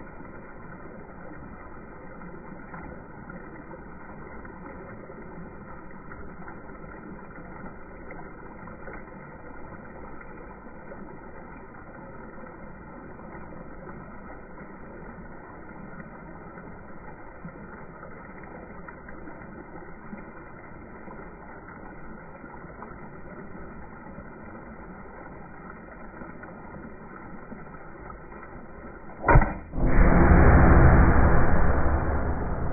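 Steady trickle of water running over the rocks of a garden pond stream. About a second before the end, a single sharp shot from a Nerf blaster.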